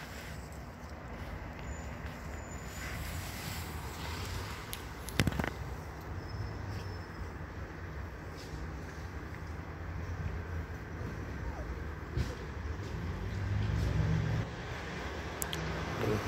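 Steady road traffic noise, with a vehicle passing louder about thirteen to fourteen seconds in. A single sharp knock sounds about five seconds in.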